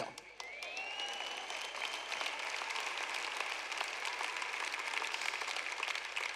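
A large arena audience applauding with a steady, dense crackle of many hands clapping. A single high tone rises about half a second in and then holds above the clapping.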